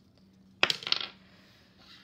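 Two dice thrown onto a tabletop, clattering and tumbling in a quick run of clicks for about half a second, starting just over half a second in, then settling.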